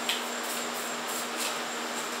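Steady room hum and hiss, with a couple of faint rustles of homemade paper cards being shuffled by hand.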